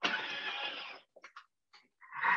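Thermomix food processor's motor starting up as its speed dial is turned up to 2 for gently melting chocolate and butter at 50 °C: a short, noisy whir lasting about a second, followed by a few faint short sounds.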